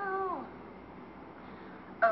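A young woman's wordless held vocal note, high and steady, sliding down in pitch and ending about half a second in; then only faint room sound.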